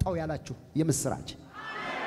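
Speech: a man preaching into a microphone, his voice carried by the hall's sound system.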